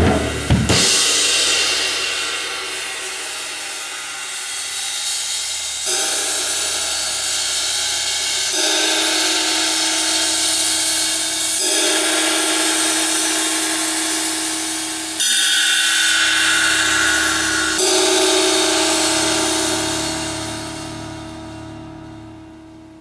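Zildjian 22" K Constantinople ride cymbal with a single rivet, struck about six times, each hit ringing on in a long bright wash. The ringing fades out near the end.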